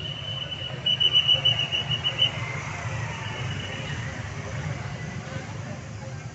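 A whistle blown in a long shrill blast that breaks into a trill and stops a little over two seconds in, over a steady background of crowd chatter and motorbike engines.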